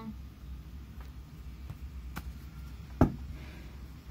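Tarot cards being handled: a few faint clicks of the cards and one sharp tap about three seconds in, over a low steady hum.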